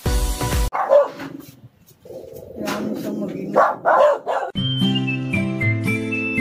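A dog barking several times, then background music with clear, separate notes coming in about halfway through.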